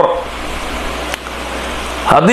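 Steady background hiss with a low hum in a pause between a man's spoken phrases, with one faint click a little past halfway; the tail of his voice dies away at the very start.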